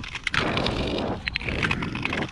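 Long-distance tour skate blades gliding and scraping over natural lake ice, with sharp clicks in the scraping and a push about once a second.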